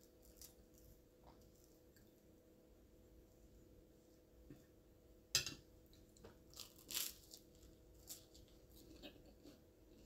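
Quiet eating sounds of toast with fried egg: a sharp clink of a fork set down on a ceramic plate about halfway through, then a few faint crunches of toast being bitten and chewed.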